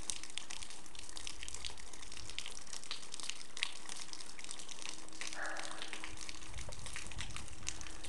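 Meltwater dripping and trickling from thawing snow: a dense, steady patter of small drips and crackles.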